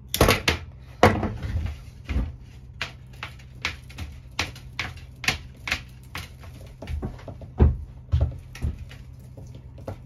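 Hand tools and stripped fiber optic cable being worked: a run of sharp, irregular clicks and snaps. They are loudest in the first second and again near eight seconds, over a low steady hum.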